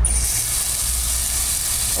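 Water from a garden irrigation valve spraying out under pressure: a steady hiss that starts suddenly with a brief whistle as the valve is opened.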